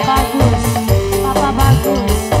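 Live sintren dangdut band music: a saxophone playing the melody over a steady drum beat and bass.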